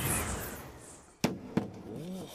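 Aluminium baseball bat hitting a pitched ball with one sharp, loud crack a little over a second in, a home-run hit, followed by a fainter knock. Before it, a rush of noise fades away.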